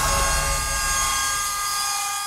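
A broadcast logo sting: a deep rumbling sweep that settles into a held chord of steady high tones, slowly fading.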